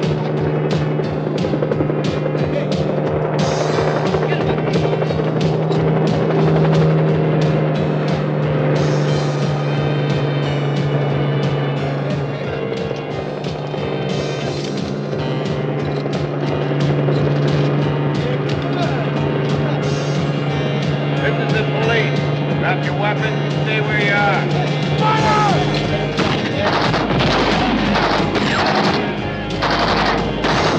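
Helicopter rotor chopping steadily over a sustained low drone of film music, with shouting voices in the second half.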